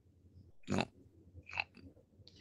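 Mostly quiet, with a man's voice briefly saying "no" twice through a video-call connection, the first about two-thirds of a second in and the second fainter near the end.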